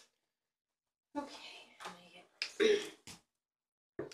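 Speech only: a person talking briefly, ending with a clear "thank you".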